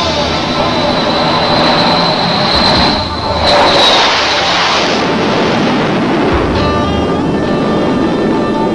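Jet engines of Embraer AMX fighters running at takeoff power: a loud roar with a high, steady turbine whine, mixed with background music. The whine bends down and fades about four seconds in, and the music is left more in front toward the end.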